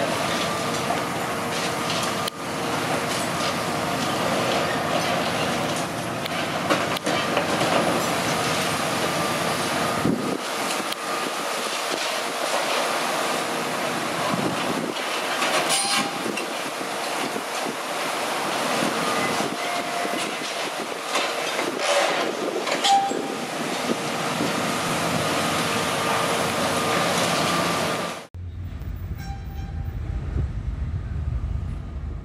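Long-reach demolition excavator at work: its engine and hydraulics run steadily with a whine, over the crunching and grinding of concrete being pulled down, with sharp knocks now and then. Near the end the sound cuts abruptly to wind buffeting the microphone.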